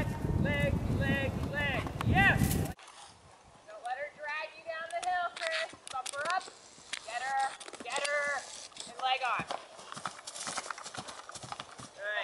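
Hoofbeats of a horse cantering on grass, with a raised voice calling out repeatedly over them. A loud low rumble fills the first few seconds and stops abruptly.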